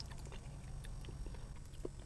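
Faint chewing of french fries with a few soft mouth clicks, over a low steady hum.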